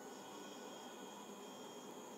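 Faint steady hiss of room tone with a thin, faint high whine, and no distinct sound event.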